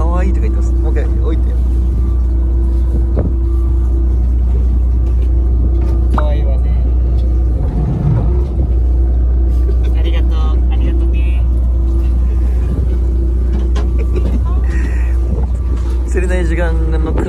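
Steady low rumble and hum of a fishing boat's engine running, with voices now and then.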